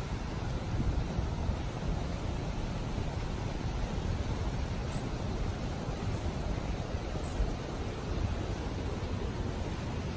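Steady rushing outdoor noise, heaviest in the low end, with no distinct events.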